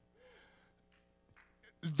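A quiet pause in a sermon delivered into a handheld microphone. A faint steady hum sits underneath and a brief faint voice comes early on. Near the end there is a sharp intake of breath as the preacher begins to speak again.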